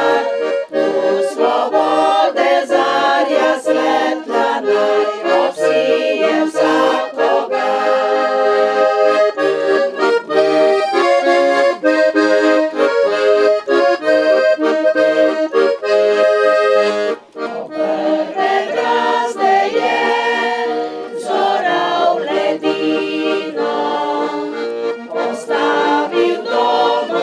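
Accordion playing a traditional-style tune with melody and chords, with a brief break about seventeen seconds in.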